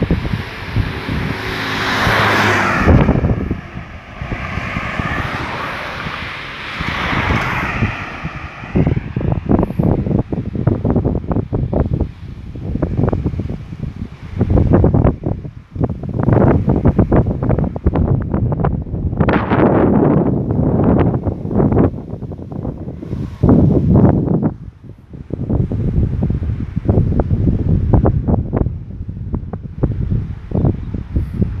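Wind buffeting the microphone in uneven gusts. Over the first several seconds, engine noise from a passing vehicle swells and fades beneath it.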